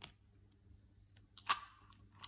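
Small clicks of a hard plastic bicycle phone holder being handled and pressed into place: a short click right at the start and a louder one with a brief rustle about one and a half seconds in.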